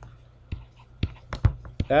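A few short, sharp taps of a pen stylus on a tablet as a small diagram is drawn, over a low steady hum.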